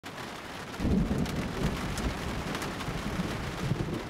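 Steady rain hissing, with a low rumble of thunder that comes in about a second in and rolls on.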